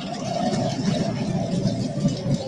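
Steady background noise of a large assembly chamber, a low murmur from the seated members with no single voice standing out.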